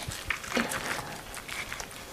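Knife slicing deep into a raw picanha (beef rump cap) on a wooden cutting board to open a pocket in the meat: faint, scattered soft cutting and handling sounds with a few small clicks.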